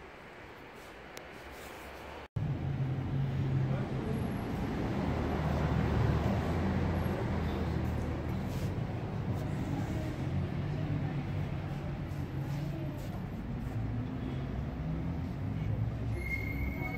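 Steady low rumble of road traffic, starting abruptly about two seconds in after a stretch of faint hiss.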